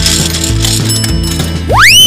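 Cartoon ratcheting crank sound of a gumball machine being turned, over upbeat backing music. Near the end comes a loud rising whistle-like sweep as the ball is dispensed.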